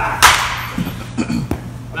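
A single loud, sharp smack of a pitched baseball at the plate, with a short hissing tail, as the hitter swings. A few short low voice sounds and a fainter click follow about a second later.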